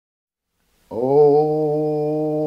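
A man's voice singing unaccompanied: silence at first, then about a second in he begins one long, steady held note, the drawn-out "Oh" of "Oh no".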